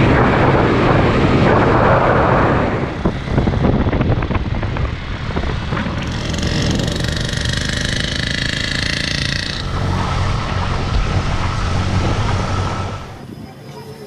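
Small motorcycle engines running on a moving ride along a road, with heavy wind rushing over the microphone in the first few seconds. Engine tones come through more clearly from about the middle, and the sound drops sharply near the end.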